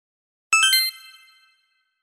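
A chime sound effect: three quick bell-like notes struck in rapid succession, each a little higher than the last, about half a second in. They then ring out and fade over about a second.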